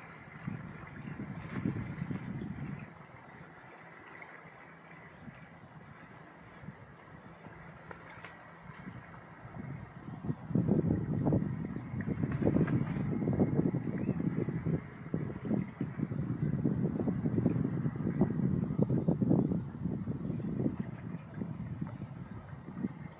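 Wind buffeting the microphone: an uneven low rumble that gusts briefly at the start, drops away, then comes back stronger and keeps gusting through the second half, over a faint steady hiss.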